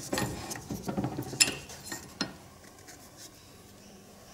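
Steel flat bar clinking and scraping against the steel die plates of a bench-mounted bar bender as it is slid into position in the slot, with sharp metal clicks about one and a half and two seconds in. Quieter for the rest.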